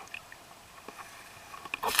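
Water splashing and dripping around a scuba diver moving at the surface, with a few light drips and clicks and then a loud splash near the end.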